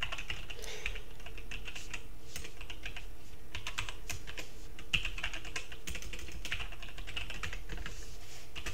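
Typing on a computer keyboard: a steady run of quick key clicks, some in rapid bursts.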